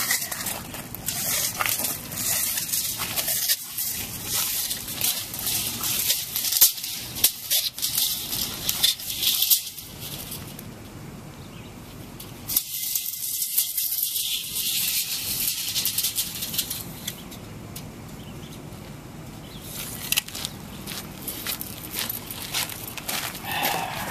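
Footsteps crunching on loose gravel, in several spells through most of the first ten seconds, again around the middle and again near the end, with quieter gaps between.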